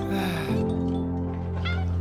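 Soft film-score music holding a steady low note, with a small kitten meowing once, briefly, near the end.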